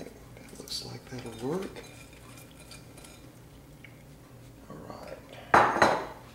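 Glass bowl being handled, with a few faint clinks, then set down on the countertop with one sharp, loud glass clunk near the end.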